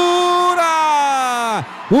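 A man's long, drawn-out shout, the commentator's goal call, held on one vowel for about a second and a half. Its pitch sags slowly, then drops away sharply at the end.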